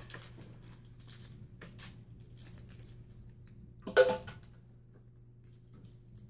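Plastic candy wrapper crinkling and crackling in small bursts as a sticky Warheads sour candy is worked open by hand. A short, loud voice sound cuts in about four seconds in.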